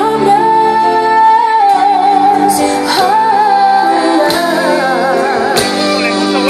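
A female singer sings live with band accompaniment, holding long notes with a wavering vibrato. Occasional cymbal strokes sound behind the voice.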